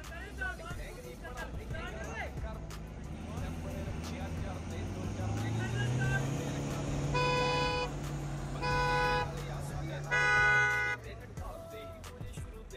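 Two SUVs' engines revving hard under load as they pull against each other on a tow rope, the engine note rising after a few seconds and then holding steady. A car horn honks three times in the second half.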